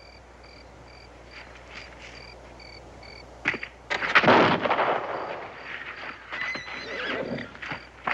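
Horse whinnying loudly about four seconds in, just after a sharp knock, followed by scattered knocks and thumps of a scuffle. Before that there is only a faint, regular chirping.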